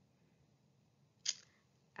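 Near silence, broken once by a single short click about a second and a quarter in.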